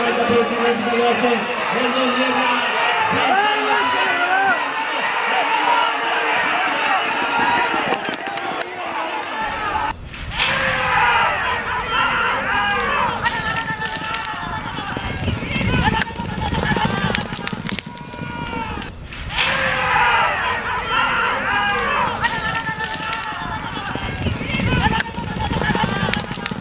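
Spectators shouting and cheering on racing horses, many voices overlapping. A deeper rumbling noise joins under the voices about ten seconds in.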